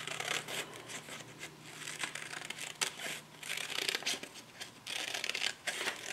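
Craft scissors snipping through stiff card paper in a run of short, irregular cuts, with the paper rustling as it is turned between snips.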